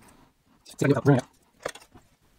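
Scissors cutting open a plastic protective sleeve, a few faint snips, with a short muttered vocal sound about a second in.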